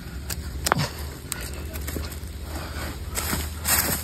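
Bare hands scraping and digging in loose soil, with scattered small crackles and snaps of dry twigs and leaves.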